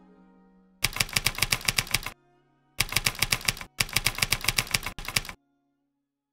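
Typewriter-key sound effect clacking in three quick runs of evenly spaced keystrokes, about eight a second, as a caption is typed out. Orchestral string music fades out just before the first run.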